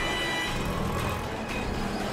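A Toyota Qualis driving past on the road, its engine and tyres running steadily.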